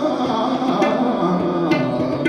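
Hindustani classical vocal in raga Bageshwari: a male voice sings a sustained, bending melodic line over harmonium and a tanpura drone. A couple of tabla strokes fall near the middle and end.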